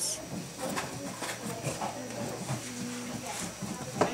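A few soft snips of hair-cutting scissors trimming the front hair, with faint, murmured voices in the background.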